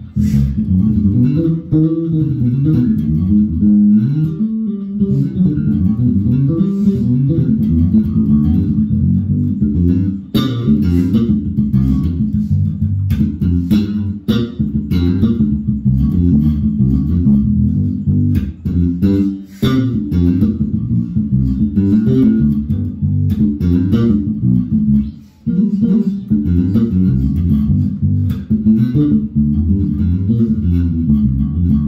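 A Mexican-made Fender '70s Jazz Bass with an alder body and rosewood fingerboard is played fingerstyle through a bass amp with its EQ set flat. It is a busy, continuous bass line with a few short breaks.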